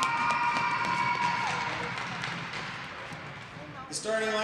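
Echoing voice over an ice arena's public-address system, a drawn-out call that trails off about a second and a half in. Then a noisy wash of crowd clapping and cheering slowly fades.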